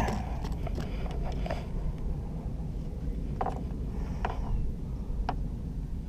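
Steady low rumble of wind on the microphone, with three faint clicks about a second apart in the second half from handling the spinning rod and reel.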